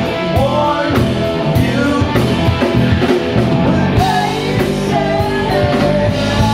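Live rock band playing: a lead singer over electric guitars and a drum kit, with regular drum hits.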